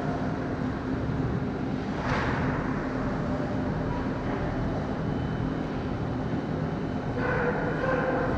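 Steady rumble of an indoor ice hockey rink during play, with a low machinery hum underneath. A brief hiss about two seconds in, and a voice calling out near the end.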